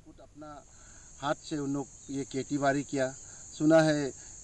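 Insects chirring: a steady, high-pitched buzz that comes in right at the start and holds unbroken, under a man's speaking voice.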